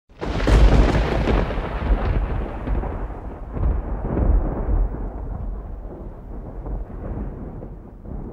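Thunder: a loud crack right at the start, then a long low rumble that rolls on, swells again around the middle, and slowly fades.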